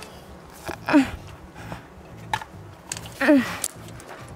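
A climber's loud breathy exhalations with a short falling grunt, about a second in and again just after three seconds, breathing hard while straining on the wall.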